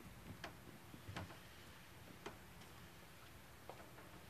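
Near silence, broken by a handful of faint, sharp clicks at uneven intervals.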